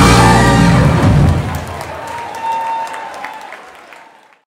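A live soul band with horns, electric guitars, drums and keyboard ends a song on a loud final chord that stops about a second in. Audience applause follows and fades away toward the end.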